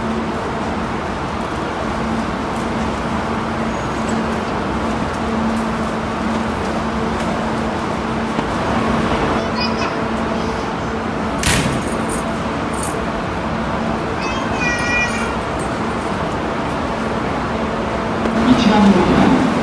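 Kintetsu limited express electric train standing at an underground station platform, its equipment giving a steady hum over the station's noisy background. A short hiss comes about eleven seconds in, and a brief high wavering squeak a few seconds later.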